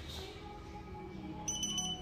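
Teeth-whitening LED lamp beeping: a quick run of short, high electronic beeps about one and a half seconds in, signalling the end of its timed light cycle as the blue light switches off. Background music plays underneath.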